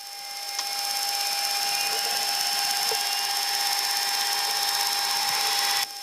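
Jet engine whine and hiss heard inside the cockpit of a Boeing E-3 Sentry with its four turbofan engines running: a steady high whine with a rushing hiss that swells over about the first second, holds, and cuts off suddenly just before the end.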